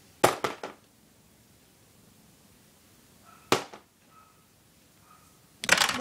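Sharp clicks and knocks of small hard objects on a hard tabletop: a quick cluster of clicks just after the start, a single sharp click about halfway through, and a louder clattering run of knocks near the end.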